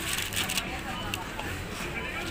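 Supermarket background noise: a low steady hum with faint voices and a few light clicks.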